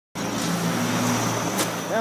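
Steady car noise with a low engine hum, heard from inside the car, and a short click about one and a half seconds in.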